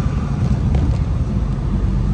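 Steady low rumble of a truck's engine and tyres at motorway speed, heard from inside the cab, with a noise of tyres on a wet road surface over it.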